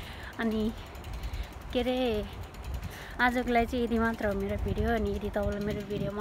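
A woman's voice in short pitched phrases, with a low rumble underneath.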